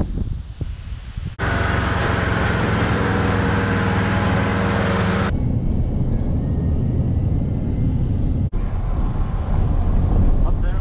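Pickup truck driving on dirt roads: engine drone and tyre noise, loudest and closest from about a second and a half in to about five seconds in, then quieter as from inside the cab, with abrupt cuts between clips.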